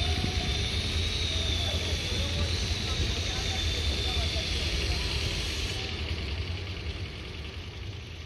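Outdoor background noise: a steady low rumble with faint, indistinct distant voices and a thin, wavering high whine. It fades down over the last two seconds.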